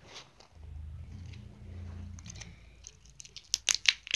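Handling noise close to the microphone: a low rubbing rumble for about two seconds as the small plastic toy figures are held and moved near the device, then a few light plastic clicks and taps near the end.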